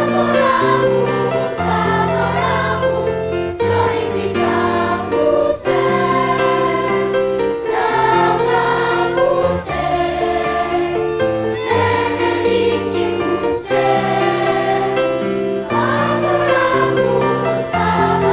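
Choir of children and youth singing a hymn in held chords, accompanied by a brass ensemble carrying the low bass notes.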